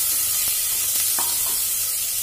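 Chopped onion, ginger, garlic and green chilli sizzling in hot oil in a pressure cooker, stirred with a slotted metal spatula that knocks lightly against the pan a couple of times.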